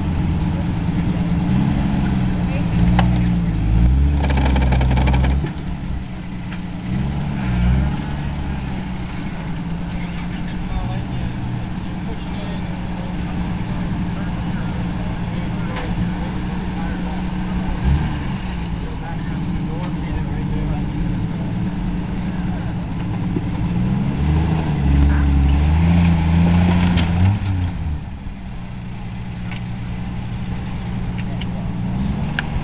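Jeep Wrangler YJ engine running at a low idle and revving up in several surges as it crawls onto a crushed car. The longest and loudest rev comes near the end.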